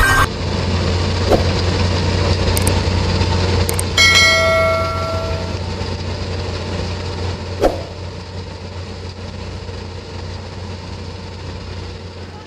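Steady rush of fast-flowing floodwater, slowly fading. About four seconds in, a single bell-like notification chime rings and dies away.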